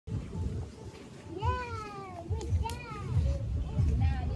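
Two drawn-out, high-pitched vocal calls, each rising and then falling, the first about a second in and the second shorter, over a steady low rumble.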